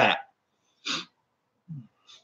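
A man's voice trailing off, then one short breathy sound about a second in and a brief low hum near the end.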